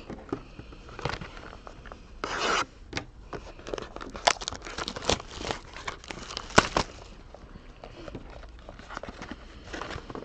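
Small cardboard trading-card boxes being handled by hand on a table. A short rustling rip a couple of seconds in, then a run of light taps, clicks and scrapes as the boxes are shuffled and set down. The sharpest tap comes near the seven-second mark.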